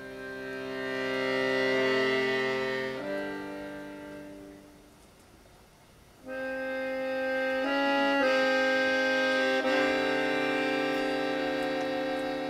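Solo accordion playing long sustained chords. The first chord swells and then fades away almost to nothing; about six seconds in, a loud chord enters suddenly, and the harmony then changes to new chords several times.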